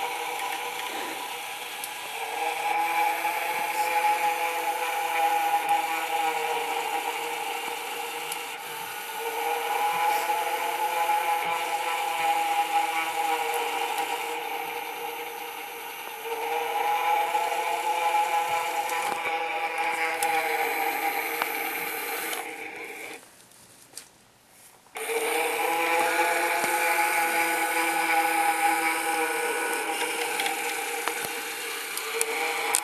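Gemmy animated floating ghost prop running: a mechanical whir with a steady pitched hum that swells and fades in repeating cycles about every seven seconds, cutting out briefly a little over twenty seconds in.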